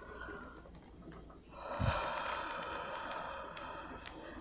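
A man's heavy breath out close to the microphone: a hiss that starts with a soft low bump about a second and a half in and trails off over the next two seconds.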